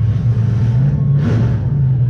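Demolition derby car's engine running at a fast idle through open exhaust stacks that poke straight up through the hood, heard loud from inside the cab. Its pitch lifts briefly a couple of times, most clearly in a short rev about a second in.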